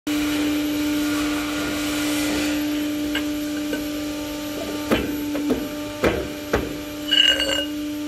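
Steel round bar knocking and scraping against the steel bed and die of a metal-bending setup: several sharp metallic knocks in the second half, the last one ringing briefly. A steady machine hum runs underneath throughout.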